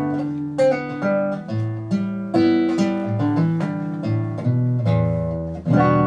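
Solo acoustic guitar playing an instrumental passage, chords picked and strummed so that the notes ring on into each other.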